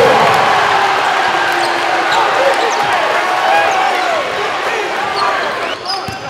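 Basketball game sound in a gym: the crowd's din and voices shouting, easing off a little, with sneakers squeaking on the hardwood and a basketball bouncing on the court.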